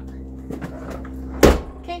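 Honda Element's lower rear tailgate swung shut, one loud slam about one and a half seconds in.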